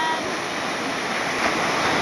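Small ocean waves breaking in the shallows, a steady rushing wash of whitewater.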